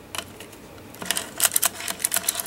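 Hard plastic toy parts clicking as the detachable grip of a B-Daman True Aim Barrel is handled and fitted back on: a couple of light clicks near the start, then a quicker run of clicks in the second half.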